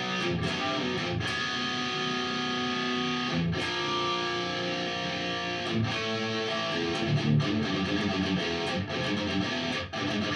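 Electric guitar, a Gibson Flying V through a Mesa/Boogie Mark V amp on its high-gain Channel 3, playing chords and single notes that ring on. There are short breaks between phrases about three and a half and six seconds in.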